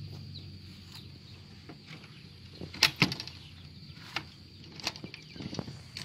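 A few sharp knocks and clicks from hands handling the wooden frame, latch and wire mesh of a small chicken coop, the loudest pair about three seconds in and smaller ones after.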